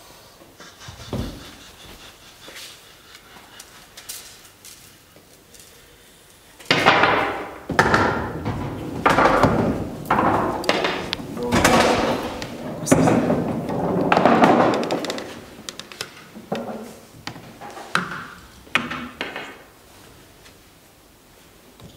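A man laughing loudly in long repeated swells, starting about seven seconds in and dying down into shorter bursts near the end. Before it there are only a few light knocks and clicks and one low thump.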